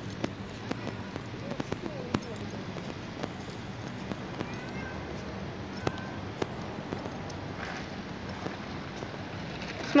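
A street cat meowing faintly a few times, over irregular footsteps on pavement and a steady outdoor hum.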